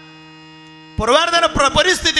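Steady electrical mains hum from the loudspeaker system, then about a second in a man's amplified voice comes in loudly, chanting.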